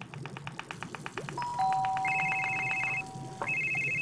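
Fast run of knife chops on a cutting board, then a phone ringing in two short bursts, with a couple of held musical tones under the first ring.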